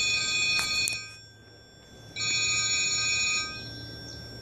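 Electronic ringing tone of several steady pitches, ringing for about a second, stopping, and ringing again for about a second just after the midpoint, in the repeating on-off pattern of a ringing phone.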